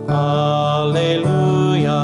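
Sung Alleluia gospel acclamation: chant-like voices holding long notes over a sustained low note, which changes pitch twice.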